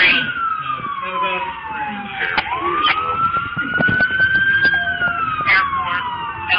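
Emergency vehicle siren in a slow wail: its pitch falls over the first two seconds or so, rises slowly to a peak a little past four and a half seconds in, then falls again.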